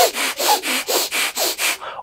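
A man panting rapidly in short, hard breaths, about five a second, acting out a wild, overexcited state.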